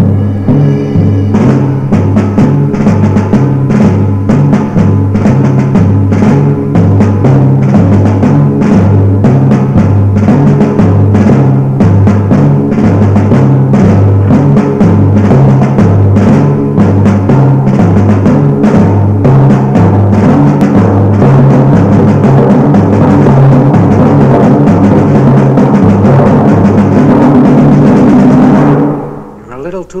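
Dramatic orchestral film score for a western showdown. Low drums beat a steady, insistent figure that alternates between two pitches under the orchestra, and it breaks off shortly before the end.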